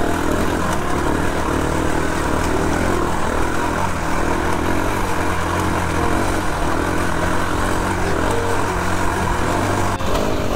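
Enduro dirt-bike engine running steadily at fairly low revs while riding up a rocky trail, with noise across the range over it.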